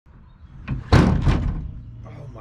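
The undampened tailgate of a 2018 Ram 3500 dropping open and banging to a stop on its support cables. A light click comes first, then a heavy bang and a second clank about a third of a second later, ringing briefly. With no dampening strut fitted, the tailgate falls freely.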